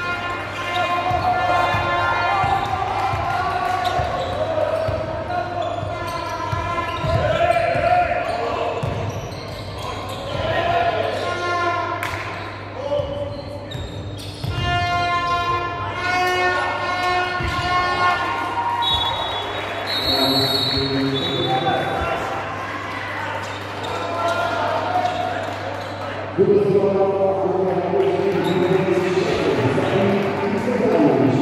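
Basketball game sounds in a large echoing hall: a ball bouncing on the hardwood court under players' and spectators' shouting. A referee's whistle sounds about two-thirds of the way through, and the crowd noise gets louder near the end.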